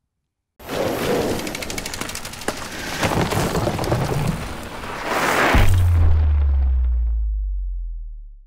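Logo sting sound effect: a noisy crackling rush scattered with sharp clicks swells for about five seconds. Then a deep low boom holds and fades away.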